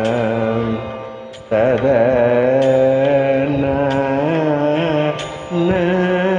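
Male voice singing a Carnatic kriti in raga Thodi over a steady drone, the held notes shaken with wide oscillating gamakas. The sound fades and breaks about one and a half seconds in, and a new phrase starts. There is another short break just before the end.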